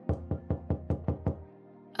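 Rapid knocking, about seven quick, even knocks in a little over a second, over soft background music.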